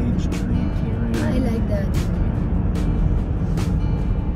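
A car's steady road and engine rumble heard from inside the cabin, with music playing over it and sharp percussive hits in the music.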